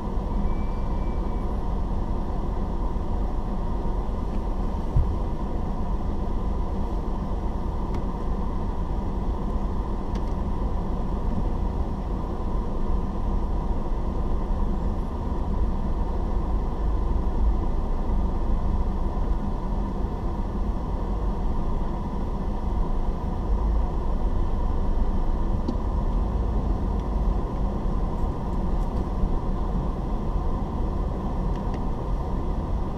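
Steady low rumble of a car's engine and tyres heard from inside the cabin while driving in slow traffic.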